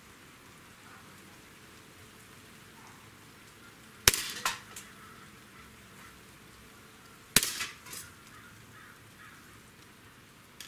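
Barra 1911 CO2 blowback BB pistol firing two shots about three seconds apart. Each shot is a sharp crack of the CO2 discharge and the heavy blowback slide cycling, followed about half a second later by a fainter click.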